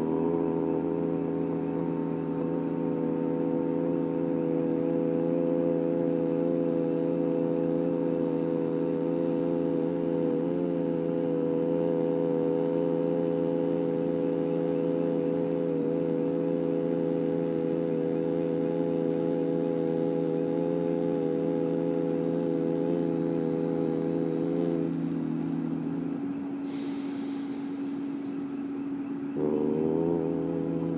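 Ambient music: a steady droning chord of held tones with a slight waver. It thins out about 25 seconds in, gives way briefly to a soft high hiss, and the chord comes back just before the end.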